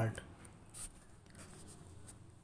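A few faint, short scratches and taps of a stylus on a tablet screen.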